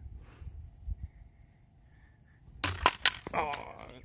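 A thrown frisbee strikes the pole and the plastic bottle on top of it: a quick run of sharp knocks about two and a half seconds in.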